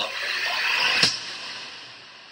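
Movie-trailer sound effect: a noisy rising swell that ends in a sharp hit about a second in, then a long fade.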